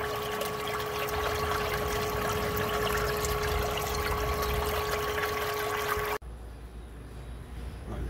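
Water splashing and churning steadily as a circulation pump discharges through a PVC elbow into a plastic drum of water, with a steady whine alongside. Both cut off suddenly about six seconds in, leaving a faint low background.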